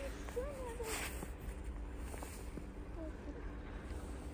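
Faint steps of a child wading through deep, fresh powder snow, with a quiet wavering voice in the first second over a steady low rumble.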